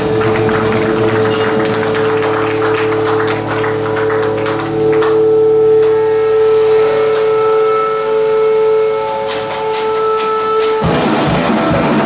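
Live rock band: a long steady ringing electric guitar tone from the amps holds over scattered drum and cymbal hits, then guitars, bass and drums crash in together about eleven seconds in.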